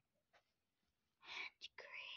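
Quiet whispering: two short whispered phrases, starting a little past halfway through.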